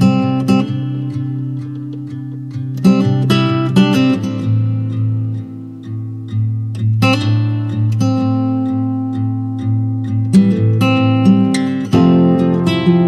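Background music: acoustic guitar, plucked notes and strummed chords in a slow, even rhythm.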